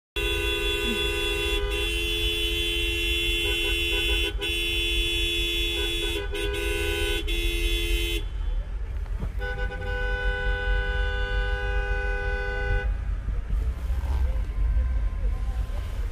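Several car horns honking together in a long, held chorus of different pitches, with a few brief gaps, then stopping about eight seconds in and starting again a second later for another few seconds. Heard from inside a car cabin, over a low rumble.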